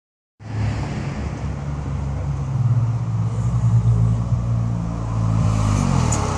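Polaris Slingshot's four-cylinder engine, a steady low rumble that starts a moment in and swells a little as the three-wheeler approaches.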